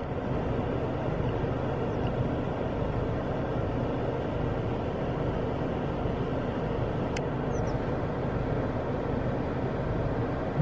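Steady low running noise of a stationary car, heard from inside the cabin. There is a single faint click about seven seconds in.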